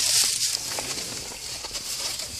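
Rustling handling noise over a steady hiss, with a few faint clicks near the start, as a carded action figure in its plastic blister pack is picked up.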